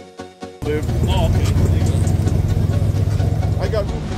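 Car audio system with trunk-mounted subwoofers playing music at high volume. The deep bass kicks in suddenly about half a second in and stays heavy and steady.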